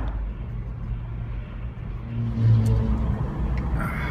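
Road and engine noise of a Jeep driving on the freeway, heard from inside the cabin: a steady low rumble, with the engine hum swelling slightly past the middle.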